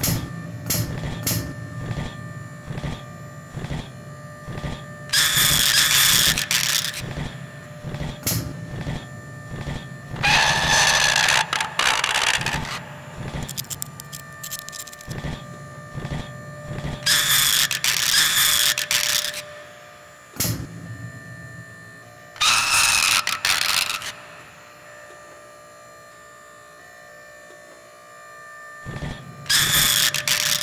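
Sound effects for an animated robot dog: mechanical clicks and whirs as it moves, broken by four loud, harsh bursts of about two seconds each, then a quiet, steady hum near the end.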